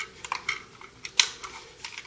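Sharp metallic clicks from a Ruger Mini-14 rifle being handled during a safety check, a few light clicks with the loudest a little past halfway.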